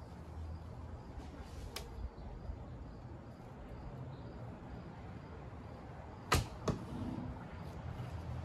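A traditional longbow shot: the string snaps forward on release about six seconds in, and the arrow strikes the target a split second later with a softer knock.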